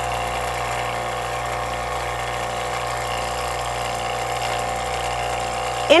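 Steady mechanical hum of a motor-driven machine running at a constant speed, with no change in pitch or level.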